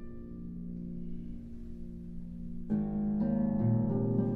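Solo concert harp: low plucked notes ringing on and slowly fading, then a louder chord plucked about two-thirds of the way in, with more notes following.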